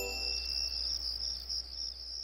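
Crickets chirping in a steady pulsing trill, a night-ambience effect, as the last notes of music die away, with a brief high twinkling chime at the very start.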